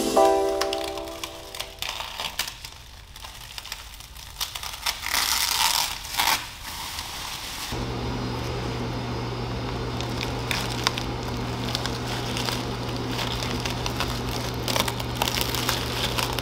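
Plastic masking sheeting crinkling and rustling as hands press it and blue painter's tape onto an engine to mask it for painting. The rustling is loudest about five to six seconds in. A steady low hum comes in about halfway through.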